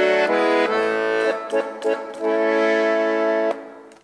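Hohner piano accordion playing a few held chords, the chord changing several times, then cutting off about three and a half seconds in.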